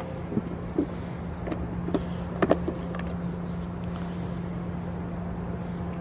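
A steady low hum over a low rumble, with a few light clicks and knocks in the first half.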